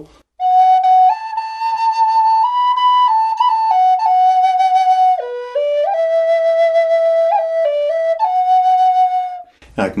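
Brazilian rosewood double Native American flute in mid B, played as a single flute: a slow melody of held notes, one line stepping up and down, that stops shortly before the end.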